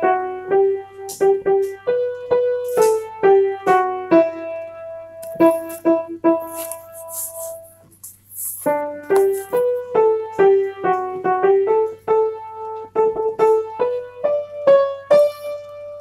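Piano accompaniment playing struck notes and chords, with a short pause about eight seconds in.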